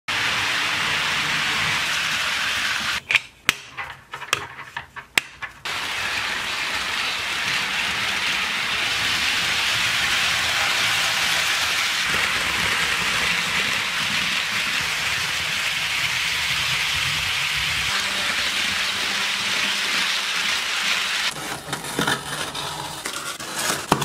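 HO scale model trains rolling along the track, a steady hiss-like rolling noise, with a few sharp clicks in a quieter stretch about three to five seconds in.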